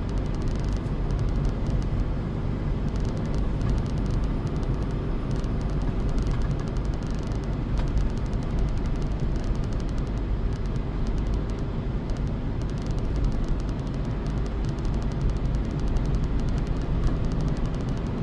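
Steady road noise and low engine hum of a car driving at an even speed, heard from inside the cabin.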